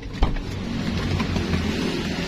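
Car driving on a road, heard from inside the cabin: a steady low engine and road rumble, with a sharp knock about a quarter second in.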